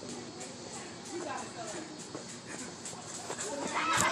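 Distant voices of a group of kids and adults talking and shouting, faint and mixed together, getting louder near the end.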